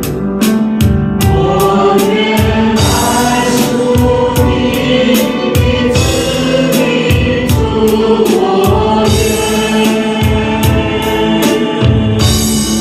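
Worship team of male and female singers on microphones singing a Mandarin worship song together, over an accompaniment with a steady beat.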